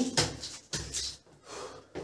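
A woman's breathy laughter: a few short, unvoiced bursts of breath with pauses between them.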